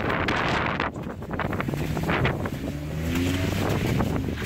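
Wind buffeting the camera microphone, with a low, steady engine hum underneath from a vehicle idling.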